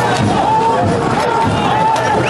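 Large outdoor crowd of protesters, many voices calling out at once in a steady, dense din with no single speaker standing out.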